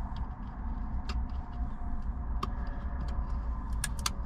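Car engine idling steadily, heard from inside the cabin. Over it come a few sharp crackles and clicks as the protective film is peeled off the mobile radio's screen, most of them near the end.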